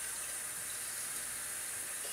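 Kitchen tap running steadily into the sink while an emptied wine bottle is rinsed out.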